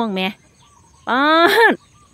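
A chicken calls once about a second in: a single loud, drawn-out note that rises and then falls in pitch.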